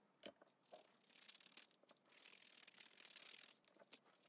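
Near silence, with faint rustling of a creased paper journal cover being handled and rubbed by hand, and a couple of soft clicks in the first second.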